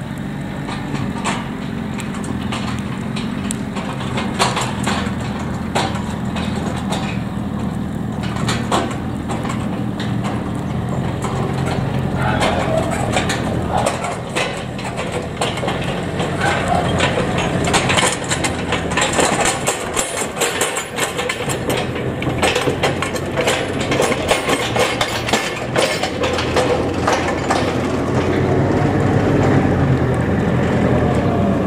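Telehandler engine running steadily under sharp crackling and popping from burning straw bales. The crackling grows denser about halfway through.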